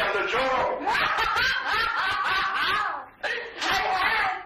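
A woman laughing heartily in several long, pitched peals, with a short break near the end.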